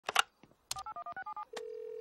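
Telephone handset clatter, then touch-tone keypad dialing of about eight quick digits, each a short two-note beep. After the dialing, a steady tone sounds in the line from about halfway through.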